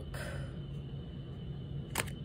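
Steady low hum with a brief soft whoosh in the first half-second and a sharp click at the very end.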